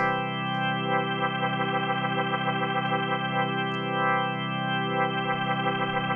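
Nord Stage 3 organ engine holding a sustained chord through its rotary speaker simulation. The tone wobbles steadily as the simulated rotor turns.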